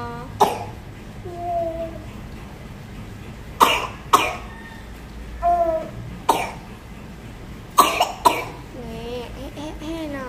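Coughing: six short coughs, two of them coming in quick pairs, about four and eight seconds in. Brief high-pitched voice sounds fall between the coughs.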